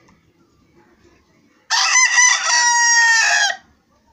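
Rooster crowing once, a single cock-a-doodle-doo of about two seconds beginning about one and a half seconds in, its steady held last note ending abruptly.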